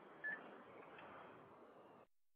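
Near silence: faint telephone-line background hiss during a pause in the call, with one brief faint blip about a quarter second in.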